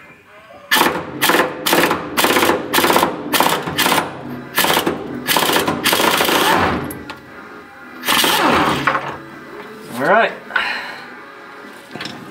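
Air impact wrench hammering in a string of short bursts, then longer runs, on a rusted body mount bolt that has been heated and soaked in Liquid Wrench to free it.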